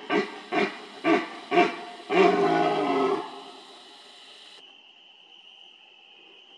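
Red deer stag roaring in the rut: four short, deep grunting roars about half a second apart, then one longer roar of about a second. A faint steady insect chirr carries on after the roars stop.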